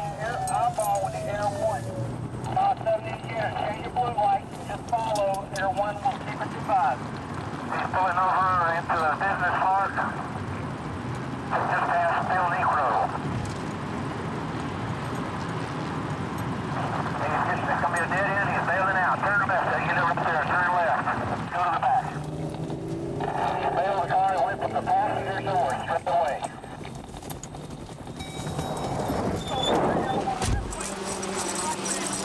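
Police car sirens yelping in several separate bursts over steady vehicle rumble, with a falling wail near the start.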